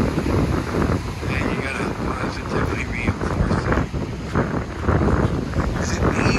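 Wind buffeting the microphone: a low, unpitched rush whose loudness rises and falls in gusts.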